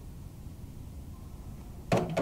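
Quiet room tone with a low steady rumble, then a sudden sharp sound just before the end.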